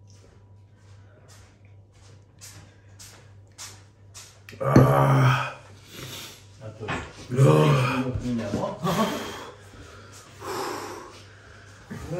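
A man panting in short, sharp breaths through his mouth, about three a second, in reaction to the capsaicin burn of an extreme chili chip. About five seconds in he breaks into several loud, pained vocal sounds.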